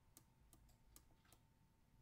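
Near silence with faint, sharp ticks of a stylus tapping a drawing tablet as numbers are handwritten, several clicks spread across the two seconds.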